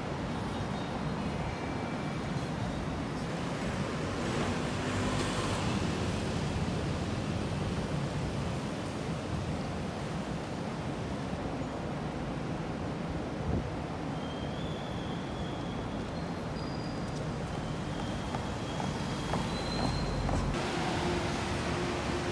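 Road traffic on a city street: a steady rush and hum of passing cars. A steady low tone joins near the end.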